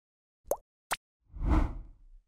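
Animated intro sound effects: a short plop with a quick upward pitch flick about half a second in, a second brief tick, then a swelling whoosh with a low rumble that fades away near the end.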